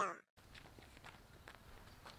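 A few faint footsteps, soft scattered steps over a quiet background hiss.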